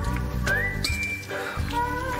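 Background score music with a whistled lead melody over a low accompaniment, the tune sliding up to a held high note about half a second in.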